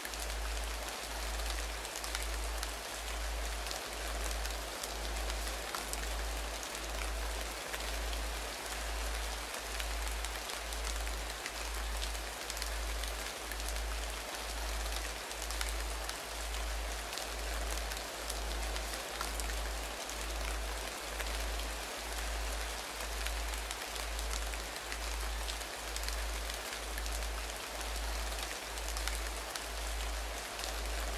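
Meditation background soundscape: a steady, rain-like hiss over a low tone that pulses evenly about once a second, the track's binaural-beat layer.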